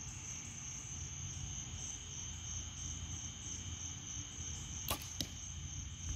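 A 65 lb draw compound bow released with a sharp snap near the end, followed about a third of a second later by a second crack, the arrow striking the target at 20 yards. A steady chorus of crickets drones throughout.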